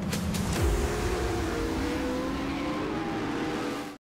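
Pro Lite short-course off-road race truck engine revving, dropping in pitch about half a second in, then holding a steady drone that fades out at the very end.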